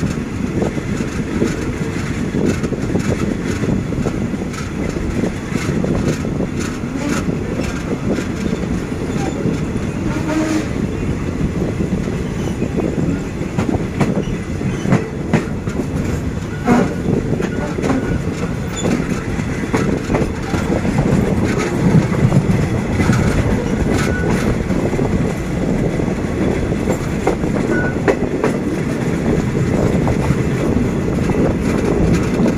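Passenger coach of the Thai ordinary train 211 running along the line, heard from its open doorway: a steady rumble of wheels on rail with scattered clicks and clacks.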